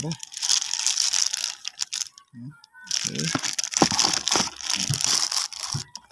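Plastic packaging crinkling as a digital multimeter in its clear plastic wrap is handled, in two long stretches with a short lull about two seconds in.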